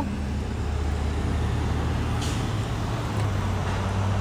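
A steady low mechanical hum under an even wash of outdoor noise, with a brief hiss about two seconds in.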